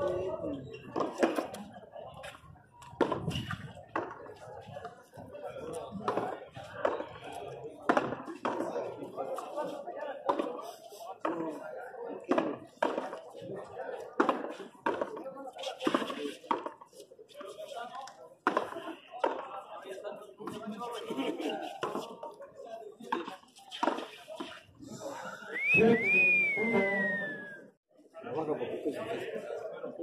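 A pelota ball being played in a frontón rally: irregular sharp smacks as the ball is struck by hand and hits the wall and the floor, with players' voices underneath. A loud shout comes near the end.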